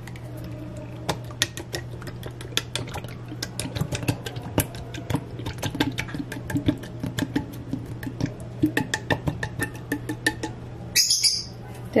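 Tomato sauce being emptied from a can into a steel pot of beans: a run of irregular light clicks and taps of the can and a metal spoon against the pot, over a steady low hum.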